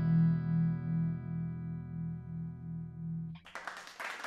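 A single distorted electric guitar chord ringing on and slowly fading, cut off suddenly about three and a half seconds in, leaving only faint noise.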